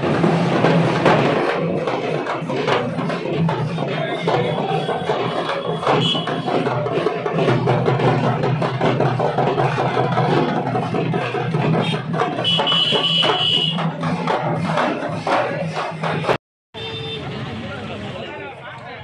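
Street procession music, loud and busy, with drums and other percussion beating amid crowd voices. It cuts off abruptly near the end and gives way to quieter crowd chatter.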